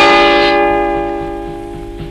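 A single bell struck once and ringing on, its tone slowly fading away, a toll following a sentence of death by hanging.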